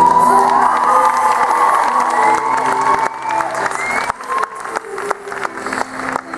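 Audience cheering and shouting over the routine's background music, with sharp claps and a dip in loudness in the second half.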